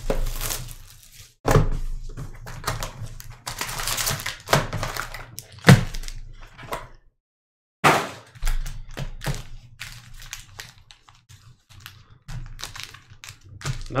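Foil trading-card packs and torn cellophane wrap handled on a tabletop: crinkling, with the packs tapped and set down in a run of light knocks and a sharper knock about six seconds in. The sound cuts out completely for a moment about seven seconds in.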